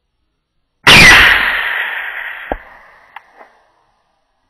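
A single shot from a .243 rifle: one sudden loud crack about a second in, rolling away over about two seconds. It is followed by a sharp knock and two faint clicks.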